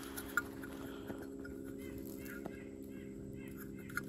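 Faint bird chirps, short calls repeating every half second or so, over a steady low hum, with a few light clicks.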